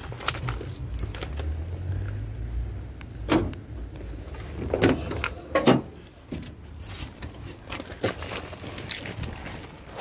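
Driver's door of a 1985 Chevrolet Camaro being unlatched and swung open with a few sharp clunks around the middle, followed by keys jangling and small clicks as someone gets into the seat.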